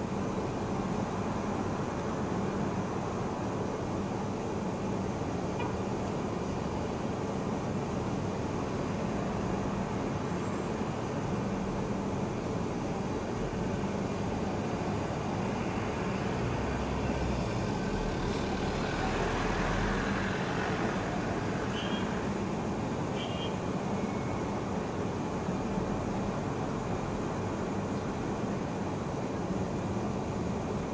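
Steady low hum of vehicle engines and road traffic, swelling briefly a little past the middle, with two short high chirps soon after.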